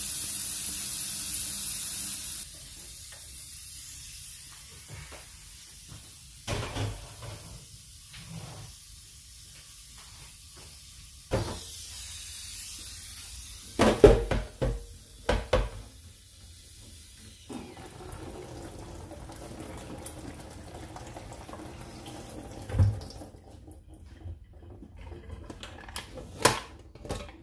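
Stainless steel pressure cooker being handled in a kitchen sink under running tap water, a quick way to cool it and drop its pressure before opening. Several sharp metal knocks and clanks of the pot and lid come in a cluster about halfway through. A high hiss is heard for the first couple of seconds.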